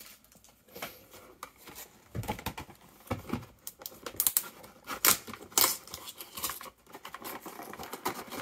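Cardboard Pokémon TCG collection box being picked up and turned over in the hands: an irregular run of clicks, taps and light scrapes from fingers on the card, loudest around the middle.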